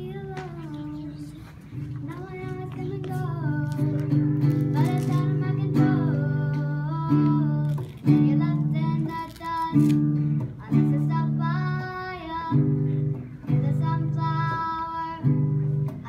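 A child singing along with her own acoustic guitar, strumming chords in a steady rhythm with short breaks between them.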